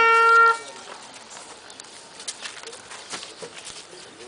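A wind instrument holds one long steady note that cuts off about half a second in, followed by faint outdoor crowd ambience with a few soft knocks.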